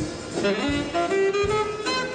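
Student wind band playing, with saxophone among the wind instruments, over a low beat about every three quarters of a second.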